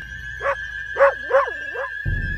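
A puppy giving four short, high yips in quick succession, each bending in pitch.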